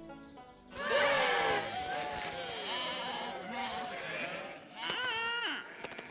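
A flock of animated sheep, voiced by actors, bleating and calling together in many overlapping, sliding voices. About five seconds in comes a single loud bleat.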